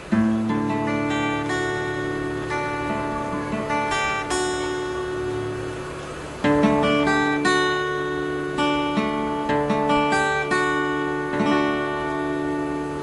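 Acoustic guitar playing a D major intro with picked notes ringing over the chord, the pinky adding and lifting the high-E third-fret note of D suspended 4. A full chord is struck right at the start and again about halfway through.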